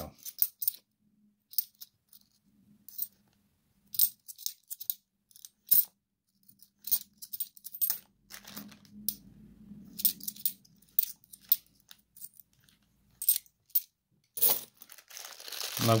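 Cupronickel 50p coins clinking against each other in the hand as they are thumbed through one by one: irregular light metallic clicks, several a second at times. Near the end a plastic coin bag crinkles as it is handled.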